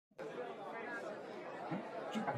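Faint, indistinct chatter of voices in a room, starting abruptly just after the beginning.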